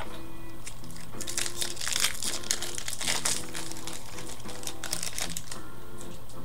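Trading-card pack wrappers from 1998 Fleer Ultra baseball packs crinkling as they are handled, in a run of crackles thickest during the first half and again briefly near the end.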